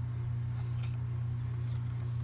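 A steady low hum, with a few faint, brief rustles as a hardcover picture book is handled and its page turned.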